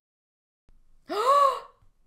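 A woman's breathy, voiced gasp of delight, rising and then falling in pitch, about a second in after a moment of dead silence.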